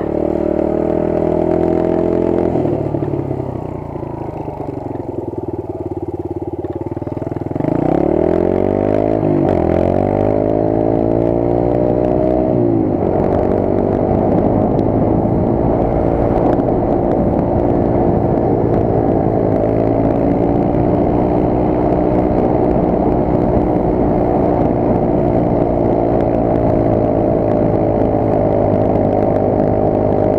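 Small dirt bike engine on the move. It runs quieter off the throttle for a few seconds, then revs up in rising sweeps, each cut off by a drop in pitch at a gear change, and settles into a steady cruise for the second half.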